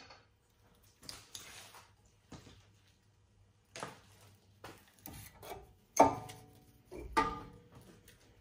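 Scattered clicks, scrapes and knocks of a front brake caliper and hand tools being handled as the caliper comes off the rotor, with a sharp knock about six seconds in and a few louder knocks just after.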